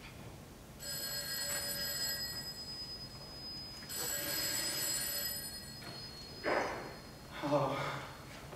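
Telephone ringing twice, each ring about two seconds long with a second's gap between them, before it is picked up.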